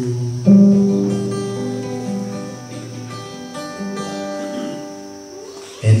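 Acoustic guitar playing a slow hymn accompaniment: a chord struck about half a second in rings and fades, followed by a few more picked notes. A man's singing voice comes back in near the end.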